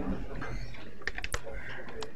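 A quick cluster of sharp clicks from a laptop keyboard being typed on, a little past the middle, over low room hum.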